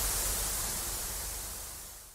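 Static hiss: a steady rush of white noise like an untuned television's snow, growing gradually fainter and dying away at the very end.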